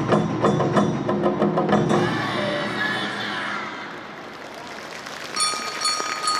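Live Sendai suzume odori festival music from a drum band: drums and percussion with pitched parts, breaking off about two seconds in and leaving a quieter wash of sound. A steady high tone starts near the end.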